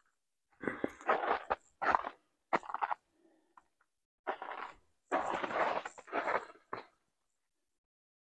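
Footsteps crunching through dry fallen leaves and over rocks on a forest trail, an uneven run of steps with a short pause partway. The sound stops abruptly about seven seconds in.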